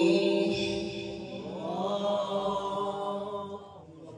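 Man reciting the Quran in melodic tajwid style: a long held note trails off, then a new phrase rises in pitch about one and a half seconds in and fades away near the end.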